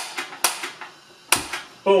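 A series of sharp clicks from the controls of a Coleman Power Cat catalytic propane heater as it is turned to light and lit. The loudest click comes a little past the middle.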